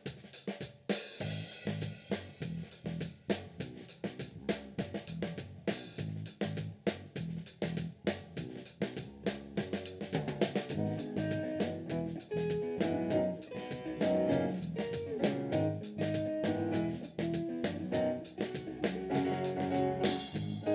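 Live rock band playing an instrumental intro: drum kit keeping a steady beat with snare, bass drum and cymbals over a bass guitar line, and a melody of guitar and keyboard notes joining about halfway through.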